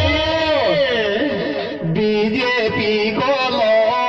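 Live Rajasthani Meena folk song (Meena geet): a man sings through a microphone and PA over instrumental accompaniment with a beat. A long falling vocal line over the first two seconds gives way to held notes and steady percussion.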